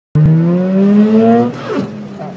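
Car engine accelerating hard from the start of an autocross run, its pitch rising steadily. About one and a half seconds in, the throttle lifts and the sound drops away for a gear change.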